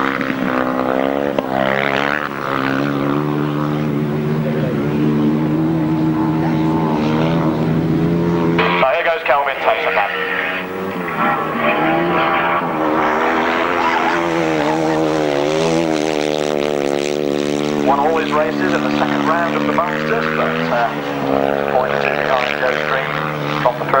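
Solo grasstrack motorcycle's single-cylinder engine running flat out on a flying lap. It holds a steady note at first, then changes abruptly about nine seconds in, and from there rises and falls as the bike slides through the bends.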